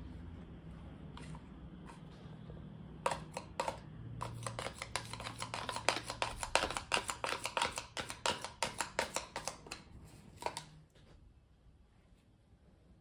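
A stick tapping and scraping against the inside of a plastic cup of acrylic pouring paint, a rapid run of clicks starting about three seconds in and stopping shortly before the end.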